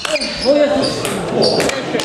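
Table tennis ball clicking and pinging off bats and table as a rally ends, with a short, loud shout from a player in the first second.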